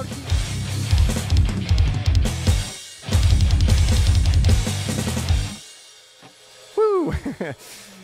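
Final bars of a metal song on drum kit with electric guitar, with a fast run of rapid kick-drum strokes about three seconds in. The band stops dead about five and a half seconds in, and a man's voice sounds briefly near the end.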